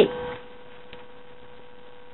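A steady electrical hum at one pitch over quiet background noise, with the end of a spoken word at the very start.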